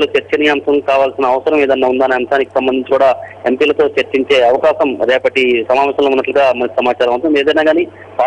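Speech only: a reporter talking continuously over a telephone line, the voice narrow and thin, with a steady low hum underneath.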